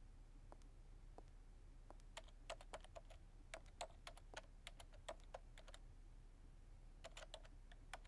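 Quiet typing on a laptop keyboard: irregular runs of light key clicks, with a pause of about a second before a last short burst of keystrokes.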